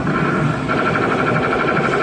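Amusement arcade din of game machines, with a rapidly pulsing high electronic beep that starts partway in and lasts about a second.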